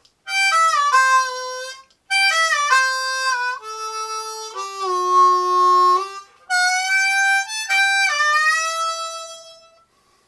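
Diatonic harmonica played cross harp: a country fill of single notes in four short phrases with brief gaps, several notes bent so the pitch slides down into place.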